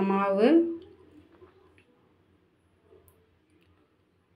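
Faint, scattered clicks and rustles of fingers working crumbly, hot-water-moistened rice flour against a metal bowl.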